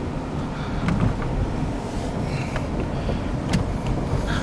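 Inside a moving car: a steady low rumble of engine and road noise, with a few faint clicks.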